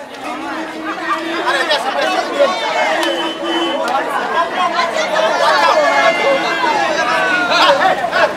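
Several people talking at once, their voices overlapping in a heated exchange over the chatter of onlookers.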